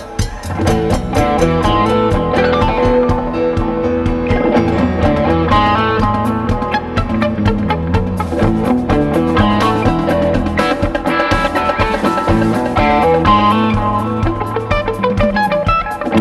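Live rock band playing: electric guitars over bass and drum kit, with a steady cymbal pulse.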